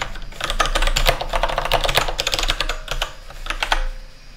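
Fast typing on a computer keyboard: a dense run of keystrokes that stops just before the end.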